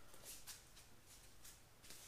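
Near silence: room tone, with a few faint small handling ticks.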